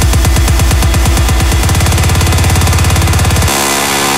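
Electronic dance music from a house DJ mix: the drum beat speeds up into a fast, building roll, and about three and a half seconds in the kick and bass drop out, leaving held synth chords.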